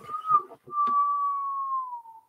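A person whistling one long note, broken briefly about half a second in, then held and sliding slightly down in pitch. Light handling clicks of a cardboard box sound under it near the start.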